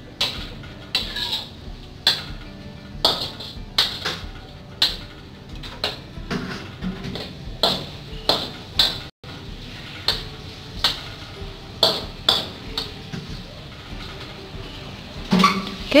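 Metal spatula scraping and knocking against a wok while stirring braised pork in a little sauce, in short strokes about once a second.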